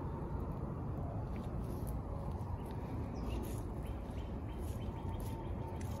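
Outdoor garden ambience: a steady low rumble with a few faint, short high chirps about the middle.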